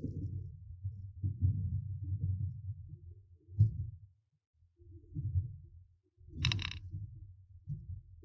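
Lexus RX450h's suspension and tyres going over a rough, rocky road, heard from inside the cabin: an irregular low rumble with uneven thuds, and a brief rattle near the end. The suspension is absorbing the bumps very nicely.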